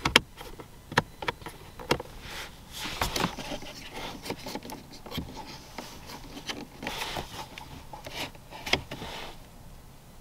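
Interior switches and buttons of a 2022 Lexus ES 350 clicking as they are pressed one after another, a sharp click about every second or so. Between the clicks come soft rubbing and sliding sounds of plastic trim as an air-vent tab is moved.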